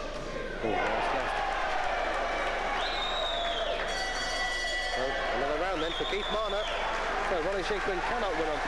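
Boxing hall crowd shouting and whistling during an exchange of punches. About four seconds in, a bell rings for about a second to end the round, then the shouting carries on.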